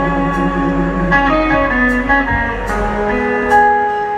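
Live rock band playing a slow instrumental passage, with an electric guitar playing a melodic line of held notes that change pitch every second or so.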